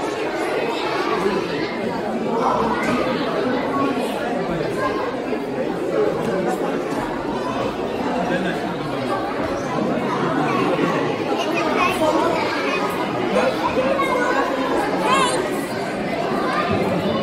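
Many people talking at once in a large hall: steady overlapping conversational chatter with no single voice standing out.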